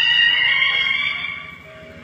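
Background music: a long held high note that fades away in the second half, leaving a brief lull.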